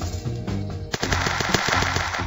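Cartoon transition sound effect: a rapid, fizzing rattle of fast clicks that starts about a second in, over light background music. It marks a new sum appearing.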